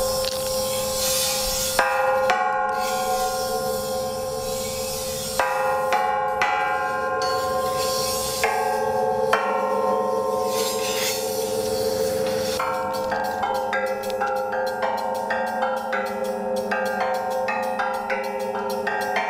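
Bell-like chimes ringing over a steady held tone: single struck notes ring on and overlap, then the strikes come faster, several a second, in the second half.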